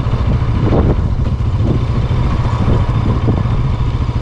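Motorcycle running steadily while being ridden, heard from the rider's position as a loud, even low rumble.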